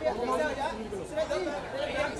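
Indistinct chatter of several voices talking over one another, people calling out directions.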